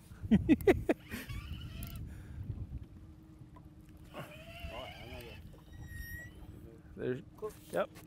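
A man laughs briefly, then a faint, steady low hum with water and boat noise. A short high-pitched call comes about six seconds in.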